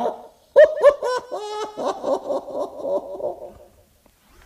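A person's voice laughing in a run of short pitched syllables that fades out near the end.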